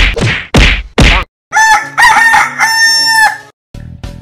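A rooster crowing cock-a-doodle-doo: a few short notes, then one long held note. It comes after about a second of loud rhythmic thuds, and a guitar tune starts near the end.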